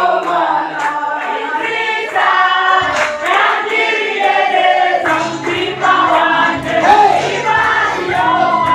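A group of voices singing a worship song together, choir-like, holding notes that rise and fall. A low, steady accompaniment joins about five seconds in.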